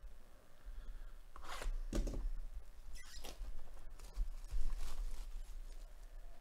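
Plastic shrink-wrap on a cardboard hobby box crinkling and rustling as gloved hands handle and turn the box, in several short bursts.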